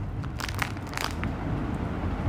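Plastic wrapper of a small Parle-G biscuit packet crinkling and crackling as it is torn open by hand, with a few short sharp crackles.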